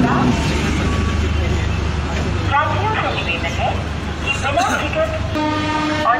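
Diesel train (DEMU) at a standstill, its engine running with a low steady hum while people's voices are heard alongside. A steady horn note cuts off just after the start, and the train's horn sounds again near the end as it is flagged off for departure.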